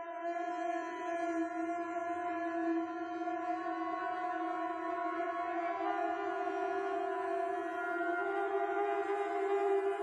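A steady, sustained droning tone with many overtones, stepping slightly up in pitch about six seconds in.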